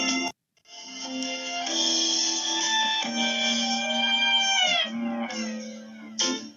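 Background music of sustained instrumental tones. It drops out briefly just after the start, and near the end the notes slide downward in pitch.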